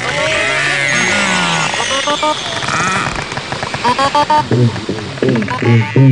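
Underwater recording of beluga whale calls: rising and falling whistles, chirps and squeaks. From about four and a half seconds in, they give way to low, regular drumming pulses, about two a second, from black drum fish.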